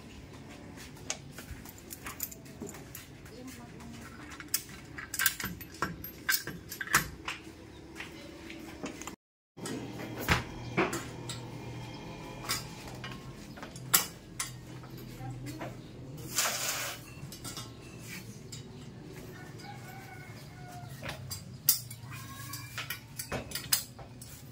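Steel air-conditioner wall bracket and its bolts clinking and tapping as the bracket is assembled and tightened by hand, in a scatter of sharp metal clicks, with a brief dropout about nine seconds in.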